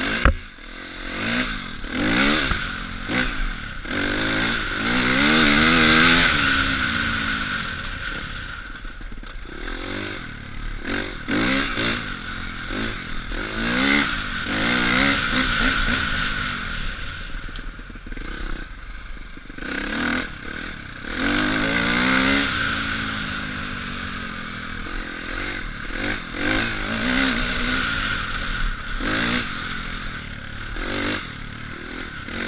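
A 250 cc KTM enduro motorcycle's engine, heard from the rider's seat, revving up and dropping back again and again as it accelerates through the gears. There is a sharp bang right at the start, and knocks and rattles from the bike over the rough track.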